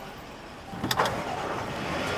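A car: a sharp click about a second in, then the steady rushing noise of the vehicle running grows louder.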